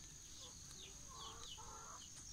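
Domestic chicks peeping faintly, a string of short falling chirps, with a few soft hen clucks about a second in. A steady high whine runs underneath.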